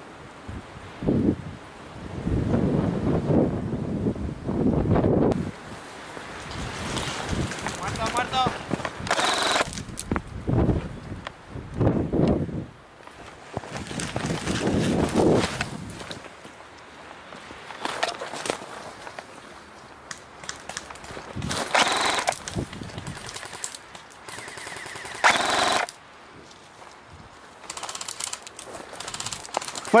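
Airsoft guns firing in short bursts, about a third of the way in and twice more in the second half, over rustling and scraping as the player pushes through dry scrub. Faint distant voices call out now and then.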